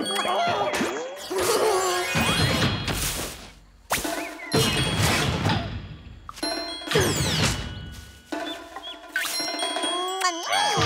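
Cartoon soundtrack of music with comic sound effects: bell-like dings and three long rushes of noise, with a cluster of falling tones near seven seconds.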